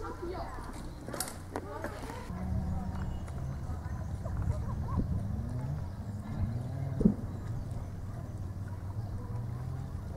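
Voices and a few clicks in the first couple of seconds, then a low steady rumble with faint voices over it.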